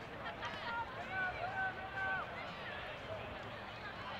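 Faint, distant shouting voices of players and spectators around the field, with a few drawn-out calls about one to two seconds in.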